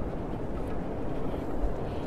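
Wind buffeting the microphone: a steady low rumbling noise, with a faint knock about one and a half seconds in.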